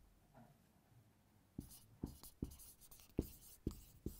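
Dry-erase marker writing on a whiteboard: a quick run of faint, short strokes and taps beginning about one and a half seconds in.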